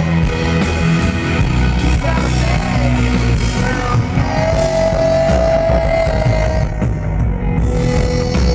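A live rock band playing grand piano, drum kit with cymbals and acoustic guitar under a male lead vocal. About halfway through the singer holds one long note.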